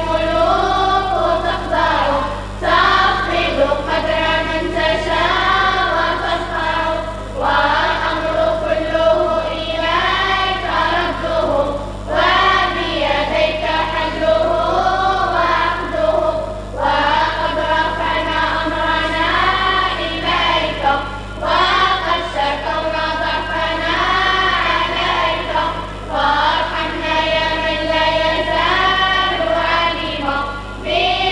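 A group of girls singing together in unison through a hall's microphones and loudspeakers, in phrases of about four to five seconds with short breaths between them.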